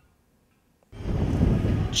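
Near silence for about a second, then a low rumbling noise starts abruptly and holds steady.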